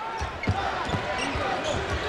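Basketball dribbled on a hardwood court: a run of short, dull bounces, over the steady murmur of an arena crowd.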